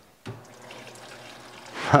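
Refrigerator door water dispenser running water into a cup, a steady stream from a newly connected water line, starting with a click about a quarter second in.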